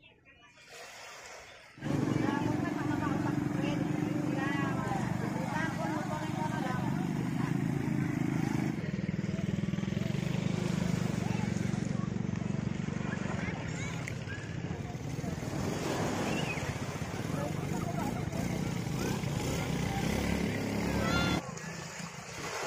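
Voices of people talking and calling over a steadily running engine; the sound starts suddenly about two seconds in and cuts off shortly before the end.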